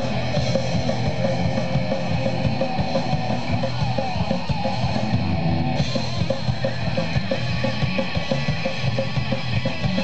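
A rock band playing live through a PA: electric guitars over a drum kit keeping a steady beat.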